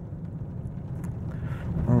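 Steady low rumble of engine and road noise inside a moving vehicle's cabin while driving.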